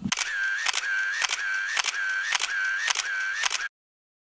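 Mechanical clicking sound effect: about seven sharp clicks, a little under two a second, each followed by a short high whir. It cuts off suddenly near the end.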